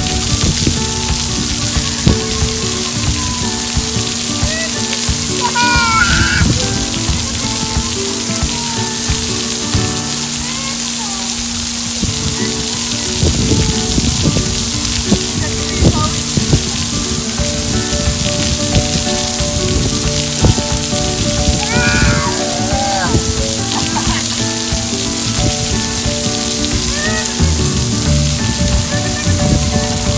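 Water jets of a splash pad spraying and pattering steadily onto a person and the wet pad, heard under background music.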